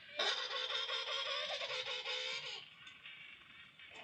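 A recording of penguin calls played back through a speaker: one loud trumpet-like call of about two and a half seconds, then a quieter tail.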